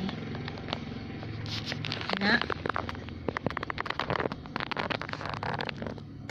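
Metal fork and chopsticks clicking and scraping against a ceramic bowl as instant noodles in broth are stirred: a rapid run of small clicks starting about a second and a half in, over a steady low hum.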